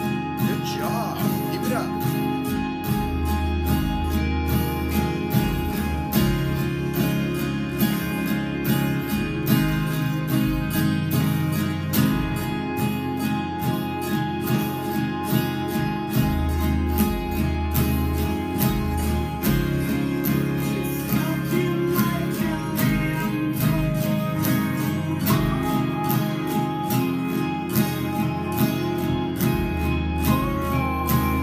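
Acoustic guitar with a capo, strummed chords played slowly at an even rhythm.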